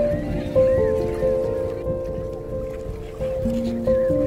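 Background music: held notes that change in steps, a new note starting every half second or so.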